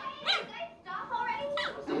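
Maltese x Bichon puppy giving two short high-pitched barks, one about a third of a second in and one near the end, wanting to be let out of its play pen.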